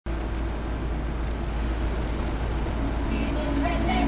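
Intro of a hip-hop track: a steady noisy wash over a deep low hum, with pitched, voice-like sounds coming in about three seconds in.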